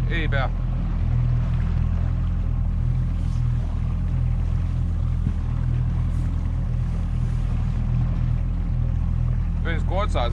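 Boat engine running steadily at low trolling speed, a constant low hum.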